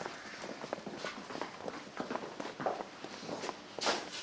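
Footsteps of several people walking across a hard floor and out through a doorway, an uneven run of short steps and scuffs. A louder thump comes near the end.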